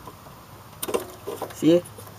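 A few light plastic clicks and rustles from a hand working the idle air control valve's electrical connector in a car engine bay, over a faint low hum, then a single spoken word.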